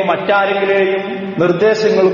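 A man's voice chanting a Quranic recitation in a drawn-out melodic style, holding two long steady notes with a short break between them.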